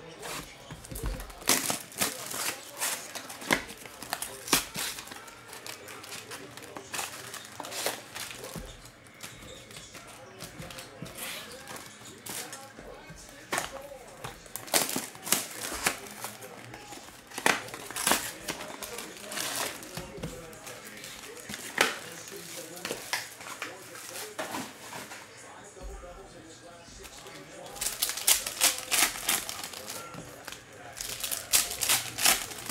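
Cellophane wrap crinkling and a cardboard trading-card box being cut and torn open, a run of irregular sharp crackles and taps; near the end the crinkling gets denser and louder as the plastic-wrapped packs are handled.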